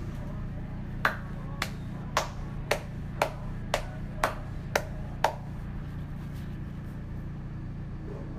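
A person clapping hands slowly and evenly, nine sharp claps about two a second, over a steady low hum.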